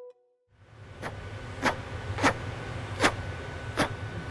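Steady low roar of a glassblowing studio's furnaces and glory holes, with five sharp clicks or taps from the glassblower's tools at the bench, spaced a little under a second apart.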